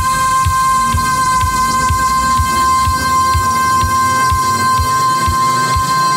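Disco dance mix playing an instrumental stretch: a steady kick beat about twice a second with light ticks between, under a long held high synth tone, and a low tone slowly rising near the end.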